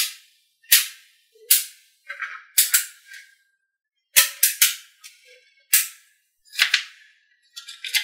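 Blocks of small metal magnet balls snapping and clacking together as they are set against one another: about a dozen sharp clicks, some in quick pairs or threes, with silence between them.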